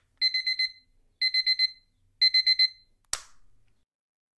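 Electronic alarm beeping in three bursts of four quick, high-pitched beeps, about one burst a second, then a sharp click just after three seconds in.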